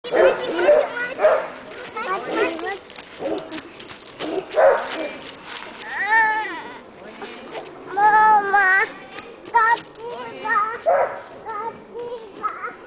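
Voices talking, then a young child's long, high-pitched calls that bend in pitch, followed by a run of short high cries near the end.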